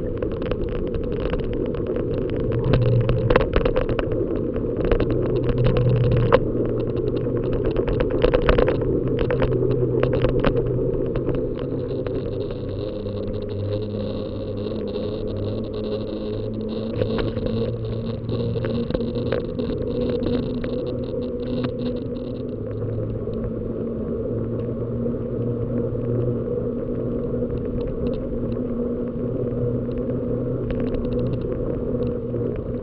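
Bicycle ride heard through a bike-mounted camera: sharp rattles and knocks as the bike crosses broken, potholed asphalt, then after about ten seconds a steadier rumble of the tyres on smoother tarmac.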